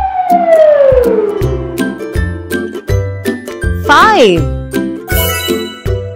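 Upbeat children's background music with a steady beat, overlaid with cartoon sound effects: a long falling whistle-like glide at the start and a short warbling, wavering tone about four seconds in.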